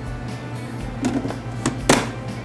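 Background music, with a few light knocks about a second in and a sharp plastic click near the end as the clear lid of a food processor bowl is fitted into place.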